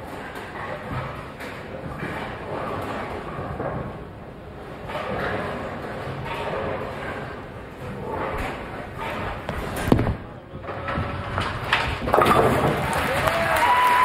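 Bowling ball knocking down a single standing 10 pin with one sharp crash about ten seconds in, converting the spare. The crowd in the bowling hall murmurs before the shot, then breaks into applause and cheers about two seconds after the hit.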